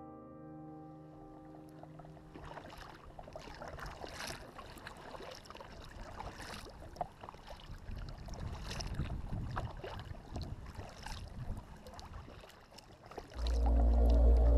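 Kayak paddling: paddle blades dipping and splashing in the water at an irregular rhythm, with drips, close to the water's surface. Piano music fades out in the first couple of seconds, and music comes back loudly near the end.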